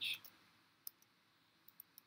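Faint typing on a computer keyboard: a few separate keystroke clicks, one a little under a second in and a quick cluster near the end.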